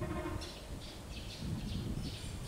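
A small bird chirping repeatedly, short high chirps about three times a second, over a low background rumble.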